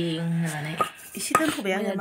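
Steel kitchenware clinking sharply twice, about a second in and again half a second later, over a woman's voice.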